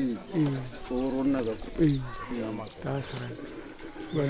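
Men talking, with speech that was not transcribed, over short high chirps from birds.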